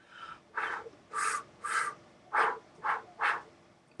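Six short, quick breaths blown and drawn through pursed lips without a harmonica, about two a second, miming the blow-draw pattern of a harmonica lick (three blow, three draw, four draw, five blow, six blow twice).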